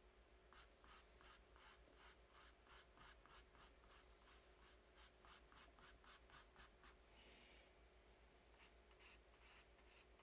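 Faint, quick strokes of a paintbrush on canvas, about three or four a second, pausing for a moment about seven seconds in.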